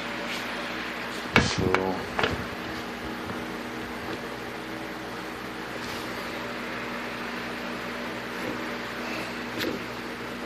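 A cotton buffing wheel being handled and fitted onto a bench grinder's shaft adapter: a few brief knocks and rustles about one and a half to two and a half seconds in, over a steady low hum. The grinder is not yet running.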